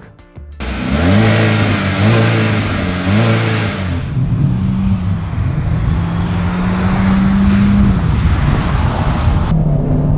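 The 2017 Chevy Cruze Hatchback's turbocharged 1.4-litre four-cylinder accelerating under load. Its revs climb and drop three times in quick succession as the six-speed automatic upshifts, then settle into a longer, steadily rising pull.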